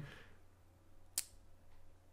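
Quiet room with a faint low hum, and one short sharp click a little over a second in.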